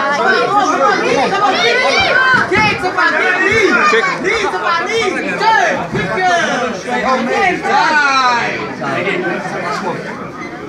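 Several voices talking and calling out over one another, with no pause.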